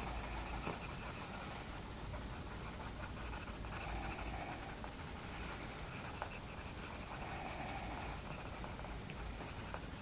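Derwent Coloursoft coloured pencil shading on smooth colouring-book paper: a faint, continuous scratch of repeated strokes.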